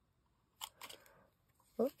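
Handheld metal hole punch biting through cardstock: a few short sharp clicks in quick succession, starting a little over half a second in.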